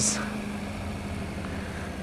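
Yamaha R1 sportbike's inline-four engine running steadily at low road speed, a low even hum with road and wind noise.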